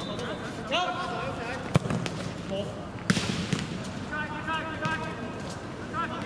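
A football kicked on a hard outdoor court: two sharp thuds, just over a second apart, among players' shouts and calls.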